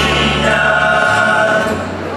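A Portuguese student tuna performing: a male chorus singing long held notes over plucked guitars and mandolins, with a double bass holding low notes beneath. The sung phrase dies away near the end.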